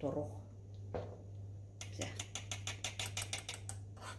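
A spoon stirring batter quickly in a small metal saucepan on the hob, clicking against the pan in a fast, even rhythm of about seven strokes a second that starts a little under two seconds in.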